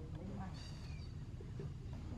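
Baby macaque giving one short, high-pitched cry about half a second in, falling in pitch as it ends: the infant crying out to its mother for comfort.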